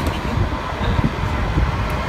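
Steady low rumble of city street traffic, with wind buffeting the phone's microphone.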